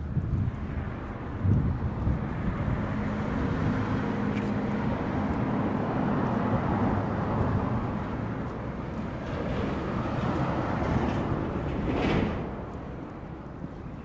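Street traffic noise: a motor vehicle's engine running close by, with a low hum that dies away about twelve seconds in.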